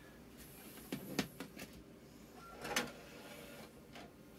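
Faint clicks and knocks from a GoVideo VR4940 DVD recorder/VCR combo's disc drive as it ejects the disc and the tray slides open. The loudest knocks come about a second in and again near three seconds.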